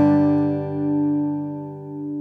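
Music: a strummed acoustic guitar chord left ringing after the last strum, its notes held and slowly dying away.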